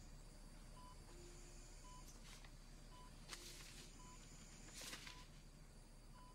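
Faint, evenly spaced electronic beeps of a bedside patient monitor, about one a second, with a few soft hissing swells in between.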